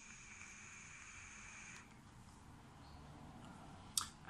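A draw through a rebuildable tank atomizer vape: a faint, steady airy hiss with a thin high whistle of air through the tank, stopping about two seconds in, followed by a softer breath.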